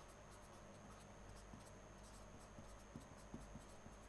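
Near silence: faint, irregular scratching of a pen writing or sketching on paper, over a faint steady high-pitched whine.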